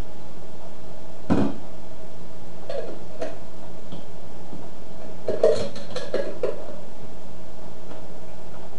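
Kitchen utensils knocking and clinking against a bowl and measuring cup while sweet relish is measured out for tartar sauce, over a steady hum. There is one solid knock about a second in, a few light clinks near the middle, and a short cluster of clinks after five seconds.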